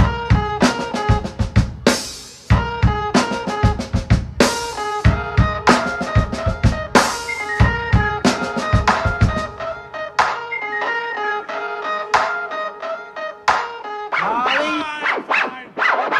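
A live jazz-fusion band plays, with a drum kit and electric keyboard chords. The drumming is busy with snare and bass drum hits until about ten seconds in, then thins out. Near the end a bending, wavering tone comes in.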